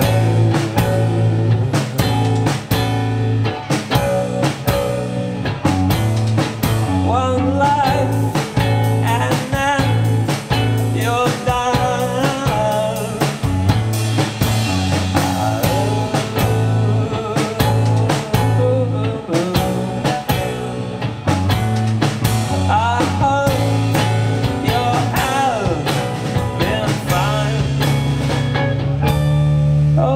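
Live rock band playing amplified through a club PA: drum kit beating a steady rhythm, electric bass pulsing underneath, and strummed acoustic guitar.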